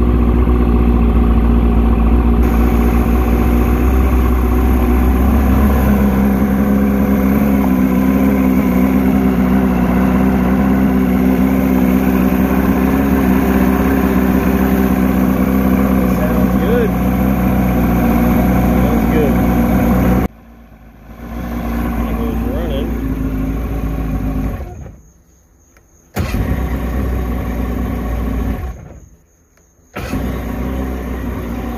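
Mercury inline-four two-stroke outboard (850, ADI ignition) running steadily at idle, freshly timed and with its carbs linked and synced, and running well. The sound drops away sharply about twenty seconds in and twice more near the end, picking up again each time.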